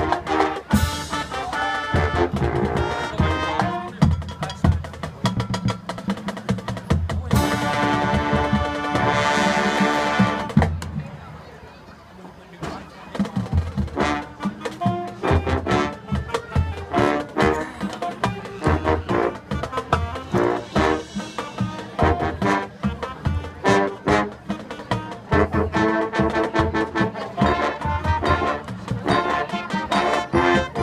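High school marching band playing: trumpets and trombones over drums keeping a steady beat. A loud held chord comes about seven seconds in and dies away into a brief lull around twelve seconds, then the rhythmic playing picks up again.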